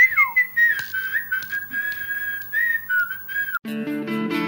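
A person whistling one clear note, held with small wavers after a quick falling slide at the start. It cuts off near the end as a slide-guitar music jingle comes in.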